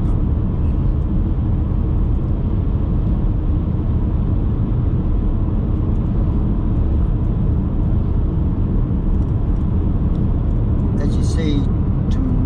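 Steady low rumble of tyre and engine noise heard from inside a moving car's cabin. A man's voice starts near the end.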